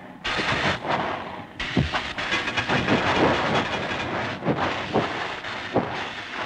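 Cartoon sound effect of a streamlined steam locomotive running: chuffing and steam hiss with a string of sharp, uneven strokes.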